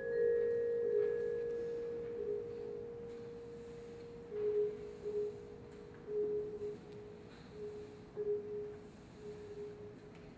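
A single held vibraphone note rings and slowly fades over the first few seconds. From about four seconds in, soft short mallet notes repeat on much the same pitch at an uneven, sparse pace.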